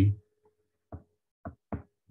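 Stylus tapping against a tablet's glass screen during handwriting: a few short, sharp taps, the first about a second in and the last two close together.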